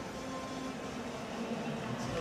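Steady background hum of the skating arena, an even noise with a faint held tone, and no voices.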